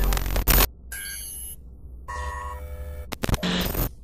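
Digital glitch transition sound effect: a burst of static hiss, then stuttering stepped electronic tones, two sharp clicks and a last burst of static that cuts off suddenly just before the end.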